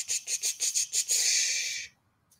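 Squeeze bottle of paint sputtering as paint is squirted onto a palette: a quick run of short air spurts, about eight a second, then a continuous hiss of air for nearly a second that stops just before the end.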